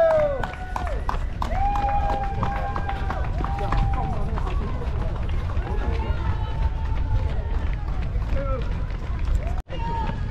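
A runner's footfalls and low buffeting on a body-worn action camera, with spectators' drawn-out cheering calls every few seconds. The sound drops out for a split second near the end.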